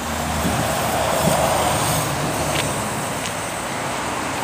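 Road traffic going past: a steady rushing noise that swells about a second and a half in and slowly fades.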